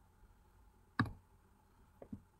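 A single sharp click about a second in, made while a drawing tool is picked from a menu on screen, over faint room noise.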